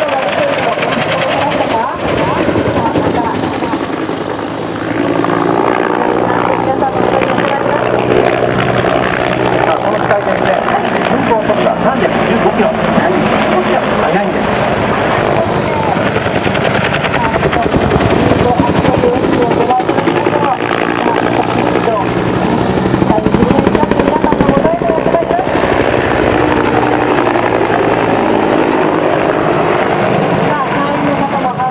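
Bell AH-1S Cobra helicopter flying a display overhead: the steady noise of its two-bladed main rotor and turbine engine, a little louder about three-quarters of the way through, with people's voices mixed in.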